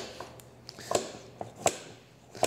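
Knife trimming the tail portion off a bone-in pork loin on a plastic cutting board: a few short, sharp clicks and knocks as the blade and hands work the meat against the board.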